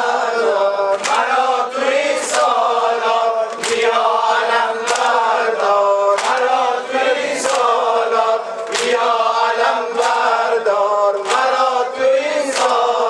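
A male voice chanting a Persian Muharram lament (noha) into a microphone, with other voices joining in, over rhythmic hand strikes about every one and a quarter seconds that keep the beat.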